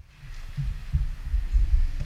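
Irregular low thumps and rumbles, growing louder toward the end: handling noise on a handheld microphone.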